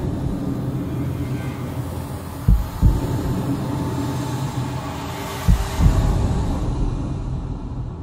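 Dramatic score sound design: slow, deep double thumps like a heartbeat, a pair about every three seconds, over a low sustained rumbling drone.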